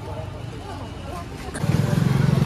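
Motor vehicle engine noise with faint voices in the background. A louder engine with a low, steady drone comes in about one and a half seconds in.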